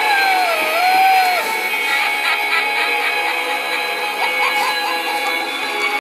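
Spooky electronic music and sound effects from an animated hanging Halloween reaper prop. A wavering, moaning tone rises and falls over the first second and a half, and a few short rising notes come a little over four seconds in.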